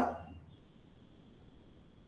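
A man's voice trailing off at the very start, then near silence: faint room tone with a thin, steady high-pitched tone.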